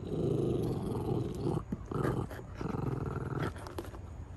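Small dog growling low while gnawing a dried chew, in three bouts: a long growl at first, a short one about two seconds in, and another near the end, with a few chewing clicks between.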